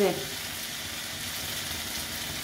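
Shredded raw-potato pakora mixture deep-frying in hot oil in a pan, a steady, even sizzle of oil bubbling around the freshly added fritter.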